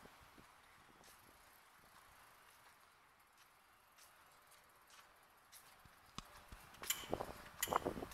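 Faint outdoor background hiss. In the last two seconds comes a run of light, sharp clicks and knocks.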